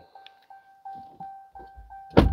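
Repeating electronic warning chime from a 2022 Ram 1500's instrument cluster, a soft steady tone pulsing about three times a second, with a few faint low thumps.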